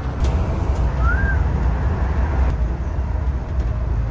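Road noise inside a Volvo 9600 coach cruising on a highway: a steady low rumble of engine and tyres. A brief rising chirp is heard about a second in.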